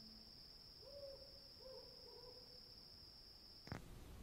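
Faint night ambience: a steady high-pitched insect drone with a few soft owl hoots in the middle. The drone cuts off with a click near the end.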